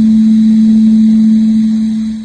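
Public-address microphone feedback: one loud, steady low tone that holds its pitch and fades away near the end.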